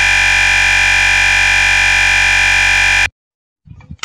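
Electronic music: a loud, perfectly steady synthesizer chord from the MX TakaTak end-card outro. It is held without change and cuts off suddenly about three seconds in, leaving silence.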